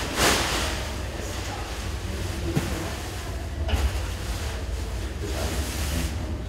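Steady low rumble of room noise, with a brief rustle just after the start and fainter ones later.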